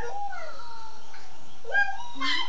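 A toddler's high-pitched wordless voice: drawn-out sounds that glide down in pitch over the first second, then another rising near the end.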